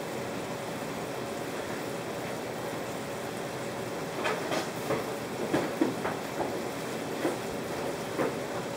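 Steady background noise with scattered light knocks and clatter starting about four seconds in, as of items being handled in a kitchen.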